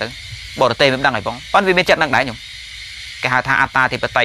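A Buddhist monk preaching in Khmer, two spoken phrases with a short pause between, over a steady background hiss.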